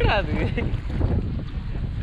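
Wind buffeting the microphone, a steady low rumble, with a short voice call near the start.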